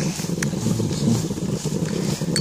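Low, steady rumble of a tricycle rolling along a wet road, with a single click about half a second in.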